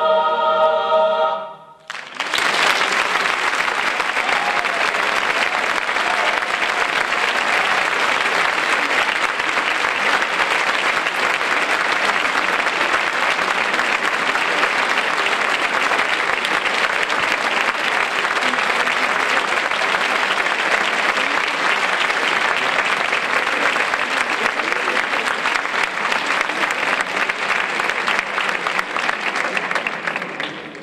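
A mixed choir holds a final chord that cuts off about a second and a half in. After a moment's pause a hall audience applauds steadily for the rest of the time.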